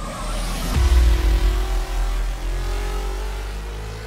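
Cinematic sound effect: a swelling whoosh that hits a deep boom about a second in, followed by a slowly rising hum that fades away.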